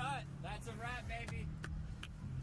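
A person's voice in short calls that rise and fall in pitch, over a steady low hum.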